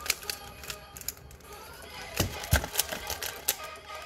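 Stickerless plastic 3×3 Rubik's cube being turned by hand: an irregular run of quick plastic clicks and clacks as the layers snap round. Two heavier knocks a little past halfway are the loudest sounds.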